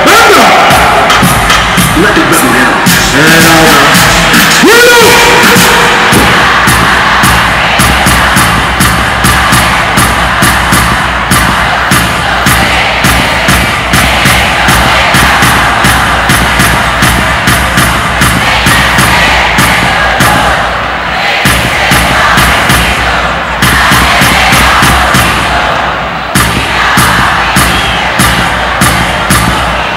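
Loud live Panamanian reggae music with a steady beat, a crowd cheering and shouting over it; a voice calls out in the first few seconds.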